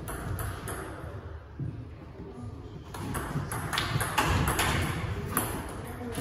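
Table tennis ball knocking sharply against bats and table in a run of quick hits. The hits come faster and louder after about three seconds.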